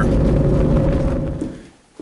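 Low road and engine rumble inside a moving vehicle's cabin, with a faint steady hum, fading away about a second and a half in.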